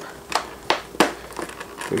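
Clear plastic retail packaging handled by fingers working its end tabs open, giving a few sharp plastic clicks and light handling rustle.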